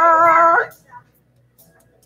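A singer's voice holding a long, slightly wavering note of a Visayan song, unaccompanied, that cuts off about half a second in.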